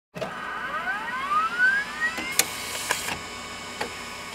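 Logo intro sound effect: a rising electronic sweep of several tones climbing for about two seconds, then a sharp hit and two more hits over a sustained shimmering ring.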